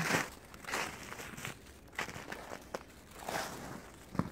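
Footsteps crunching and breaking through crusted, icy snow, a step about every two-thirds of a second.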